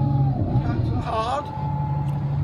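Bus engine running, heard from inside the bus as a steady low hum with a steady whine above it; both dip briefly about half a second in and return near the middle. A voice is heard briefly around a second in.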